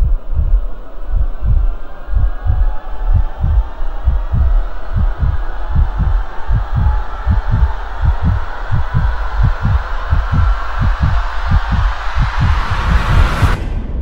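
Trailer sound design: a deep heartbeat-like thumping that speeds up under a rising swell of noise, building to a peak and cutting off suddenly near the end.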